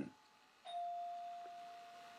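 A single chime-like tone that sounds suddenly a little over half a second in and fades slowly away over about two seconds.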